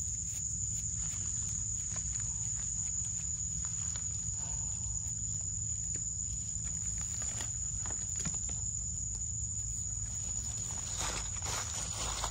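A steady, high-pitched drone of forest insects, with faint scraping and clicks from a small knife digging a mushroom out of sandy soil and, near the end, rustling steps through dry leaf litter.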